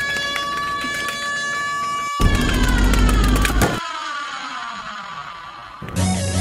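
An edited sound effect: a held, horn-like tone, then a deep boom about two seconds in, followed by a long slide down in pitch that fades out.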